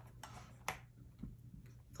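Faint taps from stamping tools being handled on a stamp-positioning plate, with one sharp click about two-thirds of a second in.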